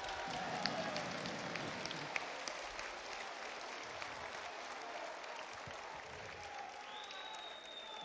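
Crowd applauding, many hands clapping, the clapping slowly dying down.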